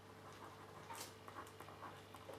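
Faint scratching of a felt-tip pen writing on paper, a few short strokes over a low steady hum.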